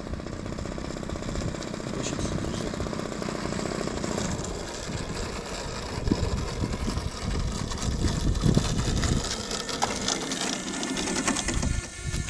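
DLE 30cc single-cylinder two-stroke gasoline engine of an RC model plane running at low throttle as the model taxis, with a fast, even firing rhythm. From about halfway through, heavier low rumbles come and go.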